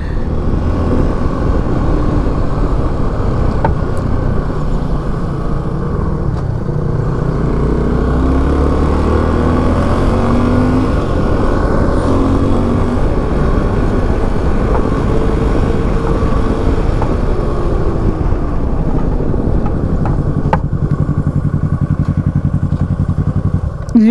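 Suzuki V-Strom 250 motorcycle engine running on the move, its pitch rising and falling with throttle and gear changes. Near the end it settles to a steadier, lower note as the bike slows to a stop.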